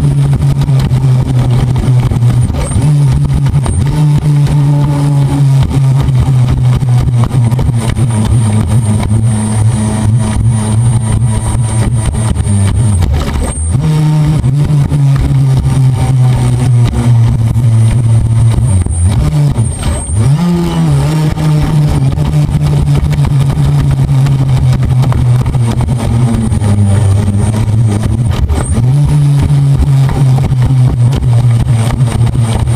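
Motor of an RC speedboat, heard from on board, running at high speed with water rushing and splashing against the hull. A few times the throttle eases and the motor's pitch dips, then climbs back as it speeds up again.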